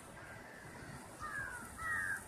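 Birds calling: a few short calls sliding down in pitch, the two loudest in the second half, over a low steady rumble.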